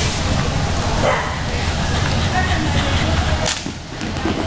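Indistinct voices over a steady low rumble, with one sharp knock about three and a half seconds in.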